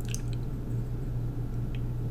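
Steady low hum with a few faint, short clicks, two near the start and one near the end.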